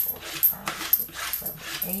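Dimes clicking and clinking against each other and the hard tabletop as they are slid aside one at a time and counted by hand, about a dozen small sharp clicks, with a voice quietly murmuring the count.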